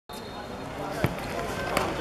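Football kicked on an outdoor court: two sharp thuds, about a second in and again near the end, over players' voices.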